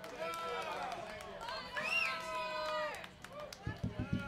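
Faint, off-microphone voices of people talking, with a few light knocks near the end.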